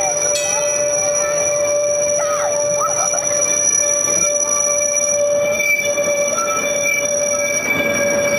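Vintage tram passing close by on curved track, its wheels squealing in a steady, high, several-toned whine over the rumble of the running gear.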